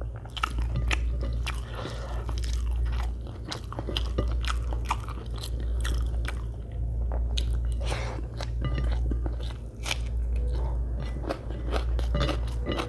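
A person chewing mouthfuls of egg biryani close to the microphone, with many sharp wet clicks from the mouth. A steady low hum runs underneath.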